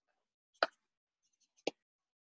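Two short, sharp taps about a second apart, from drawing materials being handled on a table.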